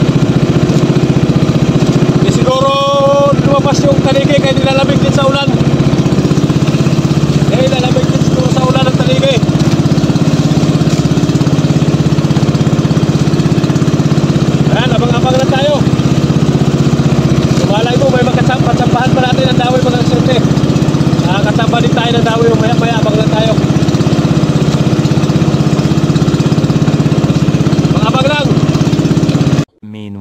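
Small outrigger boat's engine running steadily under way, with a man's voice heard over it at times. The engine sound cuts off suddenly just before the end.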